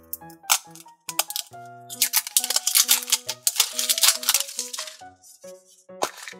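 Rapid clicking and rattling of a plastic toy capsule being twisted open, in a dense run from about two seconds in until near the end, with a few single clicks before it. Light background music plays throughout.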